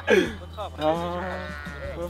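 A sheep bleating once, a drawn-out call a little under a second long, starting about a second in.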